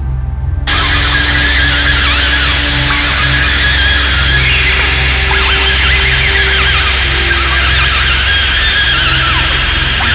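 Electronic ambient music: a deep, steady pulsing drone under a few long held tones, with many short squealing, wavering high glides layered on top. The high layer swells in just under a second in.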